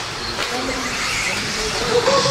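Electric 2WD RC buggies racing on an indoor dirt track: a steady mix of high-pitched motor whine and tyre noise, with echoing voices in the hall behind it.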